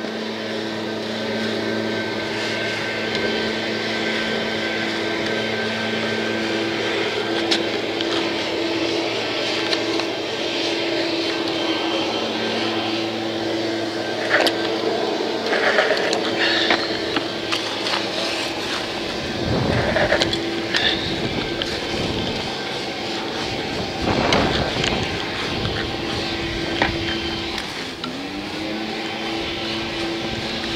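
Brush scrubbing through the spokes and hub of a dirt bike's front wheel, with irregular rubbing and splashing strokes that are loudest through the middle. A steady motor hum runs underneath and briefly rises in pitch near the end.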